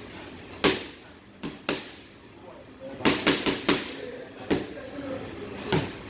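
Gloved strikes smacking into training pads held by a trainer: single hits, a quick combination of four about three seconds in, then two more.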